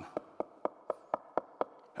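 A rapid, even series of knocks, about seven strokes at roughly four a second, struck by hand to imitate someone knocking at a front door.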